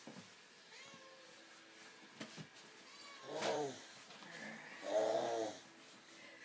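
Two short, drawn-out vocal calls, the second longer and louder, about a second and a half apart.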